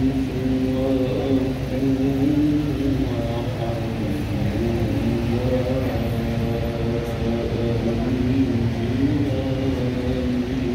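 A man's voice in slow, melodic chanting, holding long notes that glide gently up and down, over a steady low rumble.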